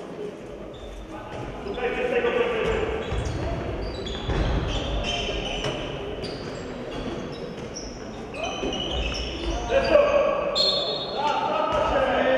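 Handball bouncing on a wooden sports-hall floor during play, with shoes squeaking and players' shouts echoing around the hall. It gets louder in the last couple of seconds.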